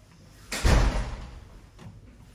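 Lift car door thudding shut about half a second in, fading over about half a second, followed by a faint button click near the end.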